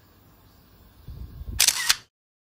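Low bumps about a second in, then a loud, short noise burst right against the microphone, like the recording device being handled, which cuts off abruptly.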